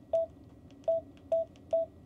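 Key beeps from a Vero VR-N76 handheld radio as its arrow keys are pressed to scroll through menus: four short beeps at the same pitch, unevenly spaced, one per key press.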